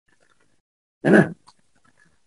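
One short voiced sound about a second in: a single brief call with an arching pitch.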